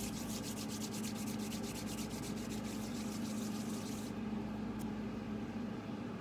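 Palms rubbed briskly together: quick, even swishes of skin on skin at about six strokes a second, stopping about four seconds in. A steady low hum sits under them.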